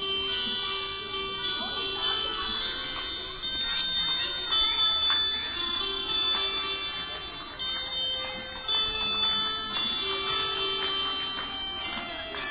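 Electronic keyboard played slowly note by note: a simple melody of steady, held electronic tones stepping from one note to the next.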